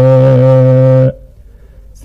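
A man's voice chanting a Somali poem, holding one long steady note on the refrain that breaks off about a second in, followed by a quiet pause.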